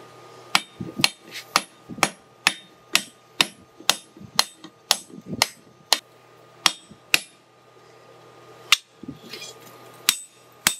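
Hand hammer striking a red-hot steel blade on an anvil, hot-forging its curve: steady ringing blows about two a second, a pause of about a second and a half, then one more blow near the end.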